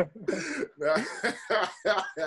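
A man coughing and clearing his throat in several short bursts, with bits of voice in between.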